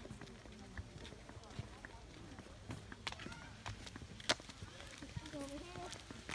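Footsteps on a flagstone path: irregular short clicks and scuffs, the sharpest one about four seconds in, with faint voices in the background.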